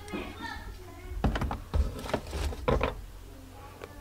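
A few sharp, irregular clicks and knocks from hands handling a digital multimeter and its test leads on a wooden workbench.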